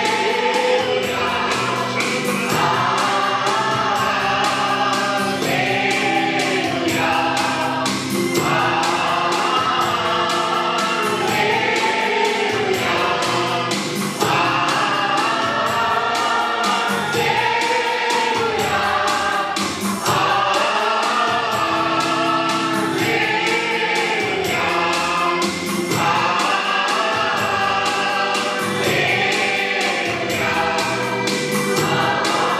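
Group of men singing a Christian worship song together through microphones, over musical accompaniment with a steady beat.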